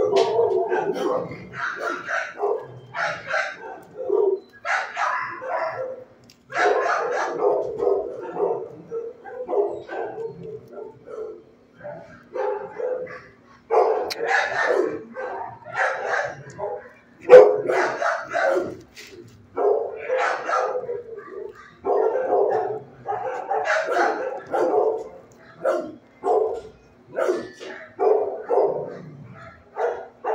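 Shelter dogs barking over and over, with the loudest bark about 17 seconds in. A faint steady hum runs underneath.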